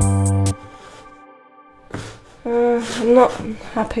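Synth bass line played back from MIDI notes converted out of a sung melody, low sustained notes over a ticking beat of about four ticks a second, stopping about half a second in. A woman's voice follows after a short pause.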